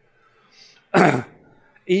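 A man clears his throat once, a short harsh burst about a second in after a near-silent pause.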